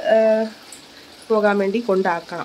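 Speech only: a voice talking in two short stretches with a pause of under a second between them.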